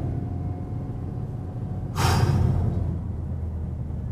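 The 2008 Honda Civic Si's engine and road noise make a steady low drone inside the car's cabin while driving. About two seconds in there is a brief, loud rush of noise that fades within about half a second.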